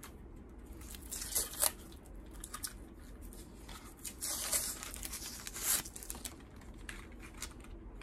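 Packaging being cut and torn open with a knife: a few short tearing, rustling bursts, about a second and a half in, around four and a half seconds in, and again near six seconds.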